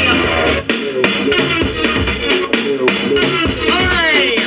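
Electronic dance music mixed live by a DJ on a CDJ deck and mixer, with steady drum hits and swooping pitched sounds, one rising sweep near the end.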